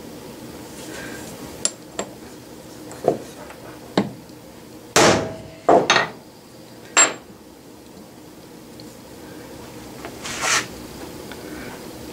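A few light metal clinks as a scrap metal block is set in place, then three sharp hammer blows on it about five to seven seconds in. The blows drive a lathe chuck backing plate down onto the chuck's transfer screws so they mark the three cap-screw hole positions.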